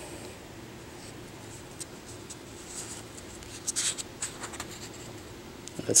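Newsprint pages of a 1970s comic book being handled and turned, the paper rustling softly in a few brief strokes, most clearly about four seconds in.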